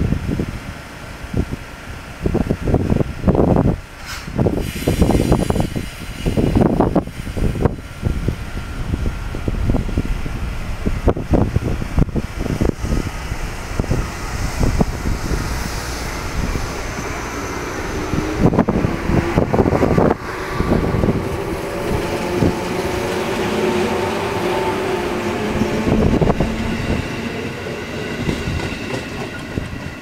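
JR Kyushu 415 series electric multiple unit pulling away from a station and gathering speed. Its wheels knock over the rail joints in repeated clatters through the first half, then a motor whine rises in pitch as it accelerates.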